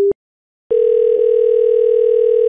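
Telephone ringback tone on an outgoing call: one steady ring of about two seconds, starting a little under a second in, with a slight warble. A short beep is cut off right at the start.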